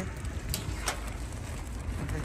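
Light rustling and two small clicks as plastic-wrapped groceries are packed into a reusable shopping bag in a car boot, over a low steady rumble.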